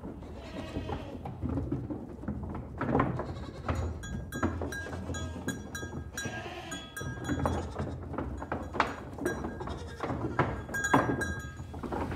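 Farmyard sound recording with livestock bleating twice, about half a second in and again around six seconds, among scattered knocks and clatter.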